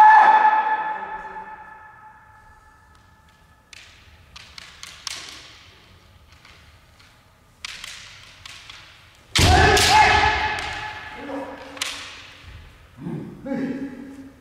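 Kendo sparring in a large, echoing hall: a long shout at the start, then light clacks of bamboo shinai, and about nine and a half seconds in a loud stamp on the wooden floor together with a kiai shout, followed by shorter shouts.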